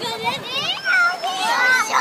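Young children's voices chattering and calling out, high-pitched, overlapping.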